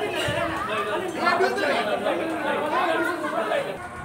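Many people talking at once in a crowded room, overlapping voices with no one voice standing out; the chatter drops away near the end.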